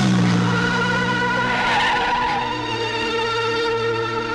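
Sustained synthesizer film score, over which a vehicle rushes past near the start and tyres skid briefly about two seconds in.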